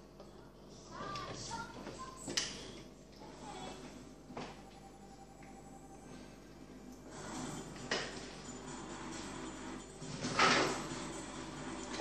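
A few light knocks and scrapes as a CPU water block is handled and set down onto its mounting studs over the processor, the loudest knock about ten and a half seconds in.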